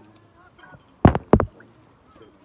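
Two loud, short splashes of water about a third of a second apart, water being thrown onto a Buddha statue in a bathing rite.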